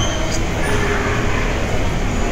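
Steady, loud rumbling background noise of a busy indoor shopping mall, with faint voices mixed in.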